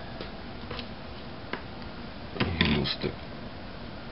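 Quiet handling noise of small tools and parts on a workbench during soldering: a few faint clicks and taps, then a short, louder clatter about two and a half seconds in.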